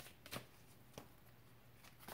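Oracle cards handled and shuffled: a few faint, short card flicks, the loudest about a third of a second in.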